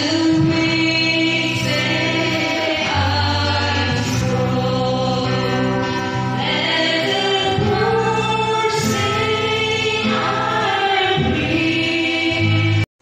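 Women's choir singing a gospel hymn, led by a woman on a microphone, with electric guitar accompaniment and steady low sustained notes underneath.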